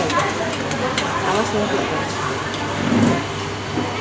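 Indistinct chatter of several voices with a steady low hum underneath, and a short spoken "oh" about a second in.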